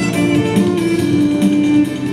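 Electric violin bowed in a slow melody, changing notes early on, then holding one long note from about half a second in until just before the end, over a steady beat about twice a second.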